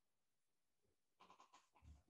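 Near silence: faint room tone, with a few faint, brief sounds in the second half.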